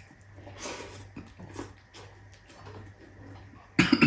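Close-up eating sounds as a mouthful of rice is eaten by hand: soft chewing and mouth noises. Near the end comes one sudden, much louder burst from the eater's mouth and throat.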